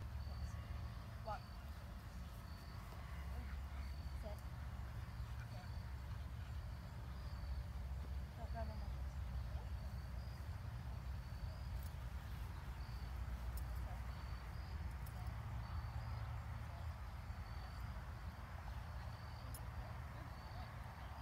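Crickets chirping at an even pace, a short high chirp repeating throughout, over a steady low wind rumble on the microphone.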